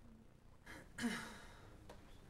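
A person's breathy sigh, a short exhale with a falling voiced tone, about a second in, followed by a faint click near the end.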